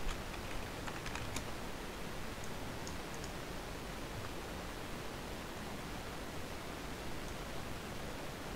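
A few faint computer keyboard keystrokes in the first three seconds, over a steady hiss.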